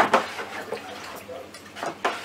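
Light knocks and clicks of a stirring utensil against a plastic fermenting bucket of honey and cherry must being mixed and aerated: a sharp click at the start and another just after, then softer knocks over a low rustle.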